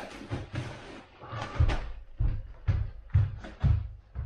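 Things being handled with a rustle, then about five footsteps on a wooden floor, roughly two a second.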